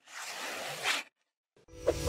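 Logo-animation sound effects: a swelling swish of hiss that cuts off about halfway, a short gap, then a musical sting starts near the end with a deep bass hit and chiming notes.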